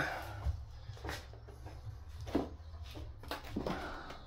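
Faint handling noises: a few soft scrapes and knocks as adhesive-buttered hexagon mosaic tile sheets are picked up off a board, over a low steady hum.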